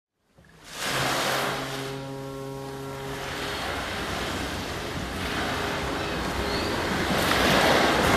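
Ocean surf sound effect: waves washing in, swelling about a second in and building again near the end, with a low held tone sounding under it for a couple of seconds near the start.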